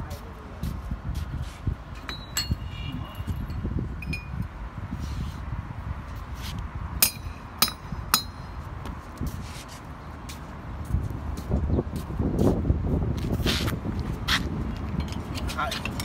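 Steel core barrel parts clinking and knocking as they are handled and set against each other and a metal tray. There is a short ringing clink about two seconds in and a quick run of three sharp clinks around the middle.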